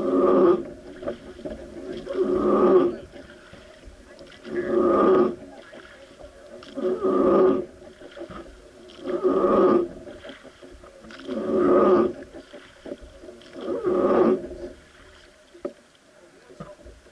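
Wooden oar on a Hozugawa river boat creaking in its rope oarlock with each rowing stroke. It gives a groan about every two and a half seconds, seven times.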